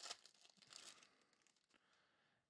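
Faint crinkling of a trading-card pack's foil wrapper as it is torn open and handled: a quick run of soft crackles over the first second or so, then dying away.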